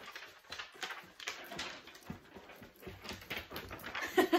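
Faint, scattered rustles and light knocks of a paper sheet being handled and of a person moving about.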